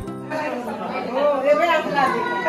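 Several people talking at once over background music.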